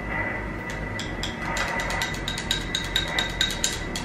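A table knife stirring in a glass of juice, its blade clinking against the glass. The clinks start sparse and come quicker and closer together from about halfway through.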